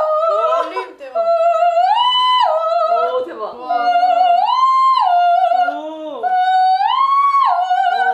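A woman's loud, high singing voice doing a vocal warm-up exercise: a short phrase that leaps up, holds the high note briefly and drops back, repeated about four times.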